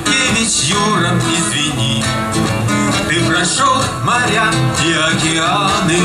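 Acoustic guitar, amplified through a stage PA, playing an instrumental break between verses of a Russian song.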